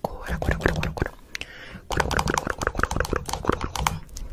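Indistinct, low voice sounds close to the microphone, broken up by many sharp clicks, with a short lull about a second in.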